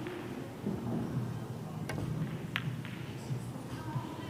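Pool balls being struck: a cue tip on the cue ball, then sharp clicks of balls colliding, the loudest about two seconds in and another about half a second later.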